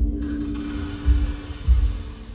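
Horror trailer soundtrack: a steady low drone with a faint hiss over it, struck by deep thuds at the start, about a second in and near the end.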